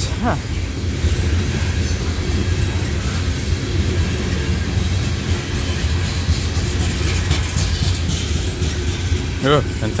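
Loaded coal hopper cars of a freight train rolling past at close range: a steady low rumble of steel wheels on rail.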